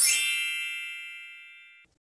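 A bright chime struck once, ringing with many high overtones and fading over nearly two seconds before cutting off: the closing ding of an animated logo jingle.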